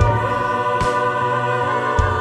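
Mixed choir singing held notes with vibrato, accompanied by piano and violin.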